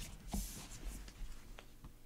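Faint handling noise: a brief rustle in the first second and a few soft clicks and knocks, the last just before the end.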